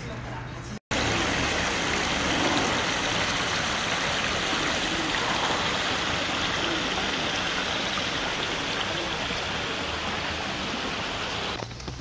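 Steady splash and rush of small fountain jets spraying into a pond. The sound starts suddenly about a second in, after a brief silence.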